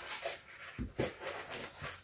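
Rustling and crinkling of fabric, paper and plastic project bags being folded and handled, with a few soft knocks on the table.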